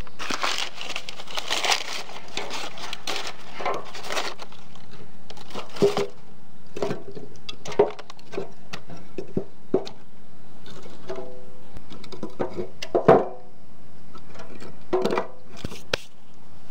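Background music, with several sharp wooden knocks as split firewood logs are laid and stacked in a steel mangal; the loudest knock comes a little after the middle.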